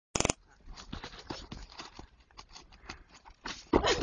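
A brief sharp tone at the very start, then faint scuffs and clicks, and a person bursting into loud laughter near the end.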